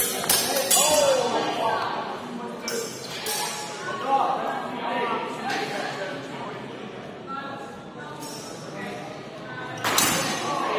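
Steel training longswords clashing: a quick run of sharp strikes in the first second, then a few single sharp clinks spaced through the following seconds, in a large echoing hall.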